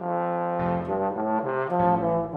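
Bass trombone playing a phrase of several notes that change pitch every few tenths of a second.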